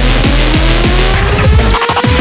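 Uptempo hardcore (J-core) electronic music: fast, hard kick drums under a synth line rising steadily in pitch. A quick drum roll comes about a second and a half in, then a brief drop-out just before the beat comes back.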